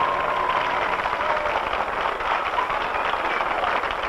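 Studio audience applauding steadily after the song ends, a thick patter of many hands clapping.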